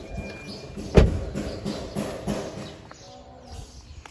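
A car door thudding shut once, loudly, about a second in, as someone gets out of the car.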